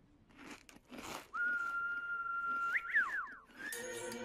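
Two short swishes, then one whistled note held for about a second and a half. It breaks into a few quick falling whistle slides, and a short rising whistle comes near the end.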